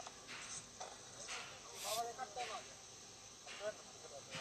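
Faint, indistinct voices in short bursts, with brief rustling noises between them.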